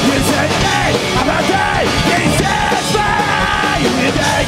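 A live rock band playing loud: electric guitars, bass and drums, with a man shouting and singing into the microphone.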